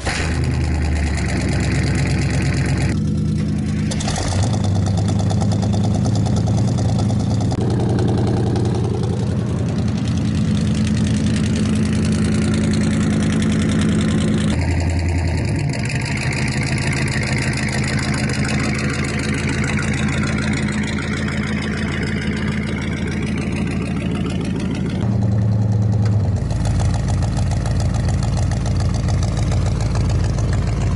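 Ford LTD's straight-piped, true-dual-exhaust 302 small-block V8 running loud at the tailpipe and being revved, its note stepping up and down several times. Near the end it gives way to a GMC's 454 big-block V8 on cherry bomb glasspacks, idling with a deeper, pulsing note.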